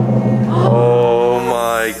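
Background music with a low steady drone fades out in the first half second. Then a long drawn-out vocal "ohhh" of amazement is held and rises in pitch into an exclamation of "oh my gosh" near the end.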